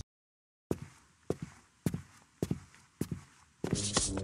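Cartoon footsteps of cowboy boots: about six steady, evenly paced steps, roughly two a second, each a sharp knock with a short ring after it. They begin after a brief silence, and music comes in near the end.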